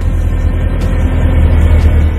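Mercedes-Benz CLK63 AMG Black Series V8 with Renntech stainless headers and resonators, running steadily with a loud, low exhaust note.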